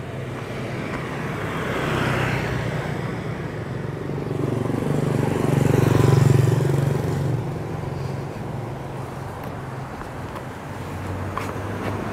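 Street traffic: the engines and tyres of passing vehicles, swelling to a peak about halfway through as one passes close, then easing off.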